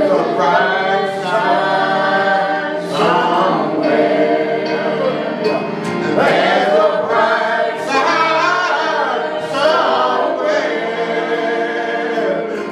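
A gospel song sung by a small group of women's and men's voices through microphones, held steadily without a break.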